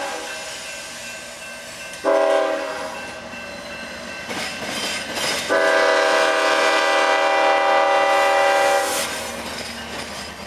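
Diesel freight locomotive's multi-chime air horn sounding the end of a grade-crossing signal: a short blast about two seconds in, then a long blast from about halfway to near the end. The rumble of the approaching locomotives and train runs underneath.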